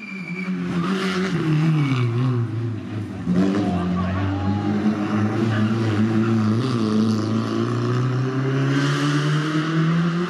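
Peugeot 106 rally car engine slowing for a tight bend, its pitch falling as it comes off the throttle. It runs at low revs through the corner, then revs rise near the end as it accelerates away.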